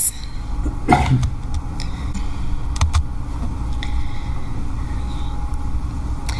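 Steady low rumble with a few short clicks and knocks, the loudest about a second in.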